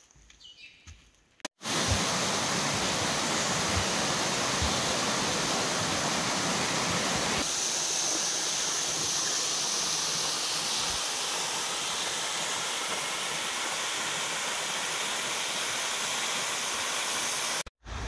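Waterfall pouring onto a rocky stream bed: a steady rush of falling water that cuts in suddenly about a second and a half in and stops just before the end, after a moment of quiet forest.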